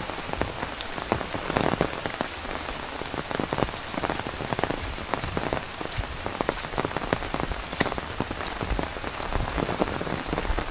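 Heavy rain falling steadily, with many separate drops hitting close by.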